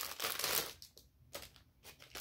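Clear plastic packaging crinkling as it is handled, rustling for under a second, then a couple of short crackles.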